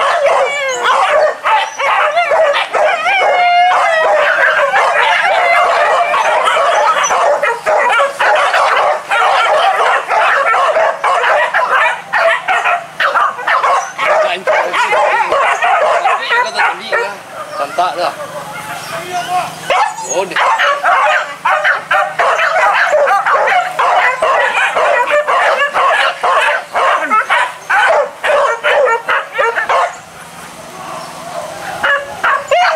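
A pack of hunting dogs yelping and baying in overlapping high cries without a break, thinning briefly about two-thirds of the way through.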